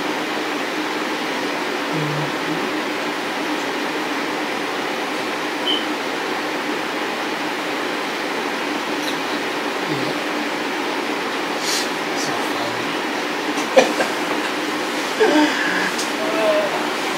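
Steady whirring rush of room noise with a constant low hum, like an air conditioner or fan, unchanging throughout, with a few faint clicks in the second half.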